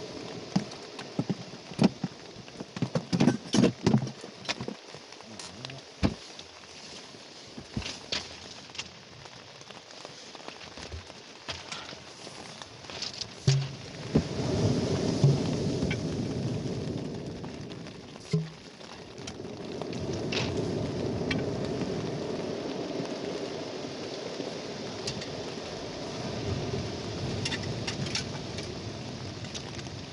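Rain falling on the fabric of a fishing shelter: loud single drops hitting close by at first, then a heavier, steadier shower from about halfway through.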